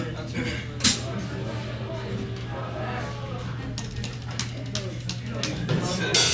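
A lull between songs: steady hum from guitar amplifiers, low voices, and scattered drum-kit hits, with one sharp hit about a second in.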